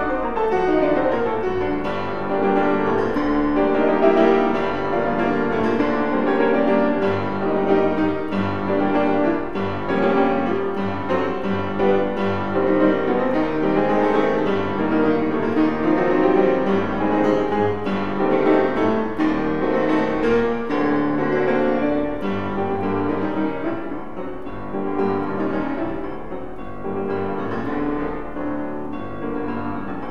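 Solo grand piano playing a classical piece with many closely packed notes, growing somewhat softer over the last several seconds.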